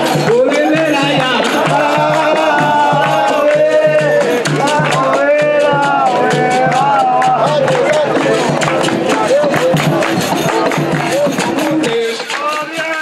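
Live capoeira music: voices singing over a berimbau and an atabaque drum, with a steady pulse about twice a second and fast percussive ticks.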